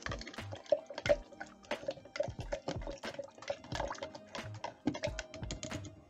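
Liquid fizzing and splashing in a glass beaker, heard as many irregular pops and clicks, over background music.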